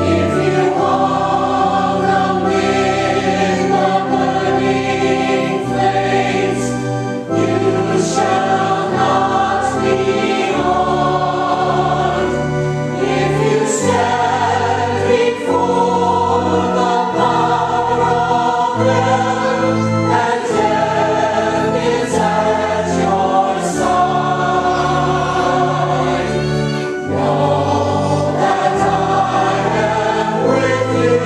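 Church choir singing a hymn, with sustained low notes under the voices.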